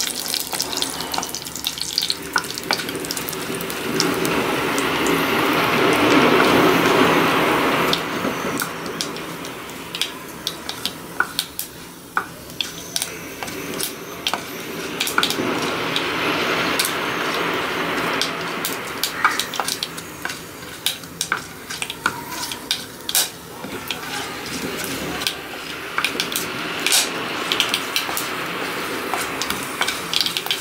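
Tempering spices (mustard seeds, cumin seeds, black pepper, curry leaves) sizzling in hot ghee in a clay pot, stirred with a wooden spatula, with many small sharp crackles throughout. The sizzling is loudest a few seconds in.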